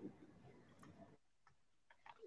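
Near silence: room tone over a video call, with a few faint, scattered computer clicks as the screen share is set up.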